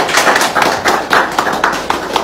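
A few people clapping their hands, quick uneven claps at about six a second.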